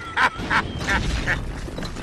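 The Green Goblin's cackling laugh: short 'ha' bursts about three a second that fade out after a second or so, over a low rumble.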